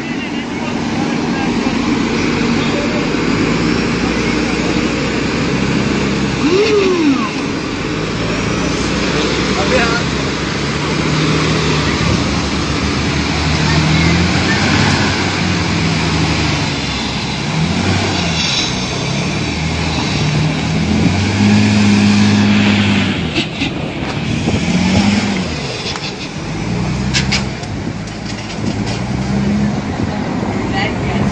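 Heavy armored vehicle's engine revving up and down as it strains to drive out of deep mud. Men's voices are heard in the background.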